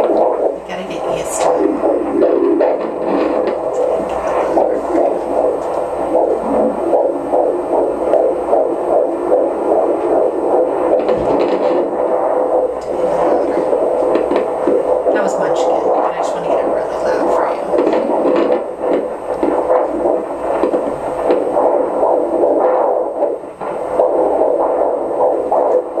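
Handheld fetal Doppler's loudspeaker playing continuous pulsing blood-flow sounds as the probe is moved over a pregnant belly, picking up the placenta near the end.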